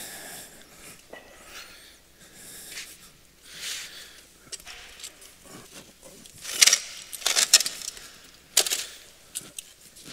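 Concrete retaining-wall blocks being handled and set on a dry-stacked wall: light scrapes and sharp clicks of block on block, the sharpest a quick cluster about seven seconds in and another near nine seconds.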